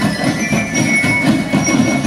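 Marching band drum line playing: snare, tenor and bass drums beating a dense, steady rhythm. A few high held notes ring above, like those of a bell lyre.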